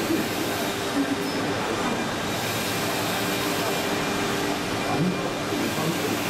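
Gantry transfer robot's carriage travelling along its aluminium-frame rails, giving a steady mechanical hum with faint even tones, over background hall noise.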